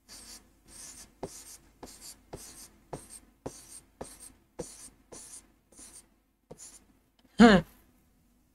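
A marker drawing quick strokes on a writing board, about two scratchy strokes a second, each starting with a light tap. Near the end comes one short, loud vocal sound with falling pitch.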